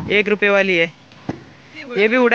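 A voice talking in Hindi, then a brief pause broken by a single sharp click, and the talking resumes near the end.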